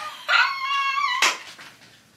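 A woman's excited high-pitched squeal, rising then held for about a second, cut off by a sharp slap.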